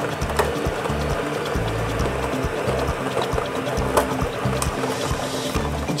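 Lottery drawing machine tumbling its plastic balls in a clear drum: a continuous clatter of many small clicks as the balls knock together, over background music with a repeating low beat.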